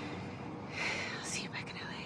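A woman whispering a few words, the breathy sound loudest about a second in.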